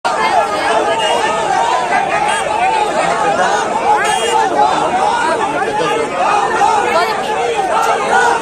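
Large crowd of men shouting at once during a jostling scuffle, many raised voices overlapping in a continuous clamour.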